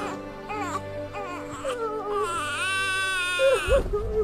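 A baby crying in short wails, then one long wail that rises and falls from about two and a half seconds in, over background music with held notes.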